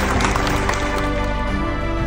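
Background music with long held notes at a steady level.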